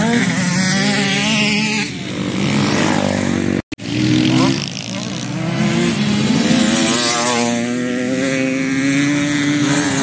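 Motocross bike engines revving on a dirt track, the pitch rising and falling as the riders work the throttle and shift. The sound drops out for an instant about four seconds in.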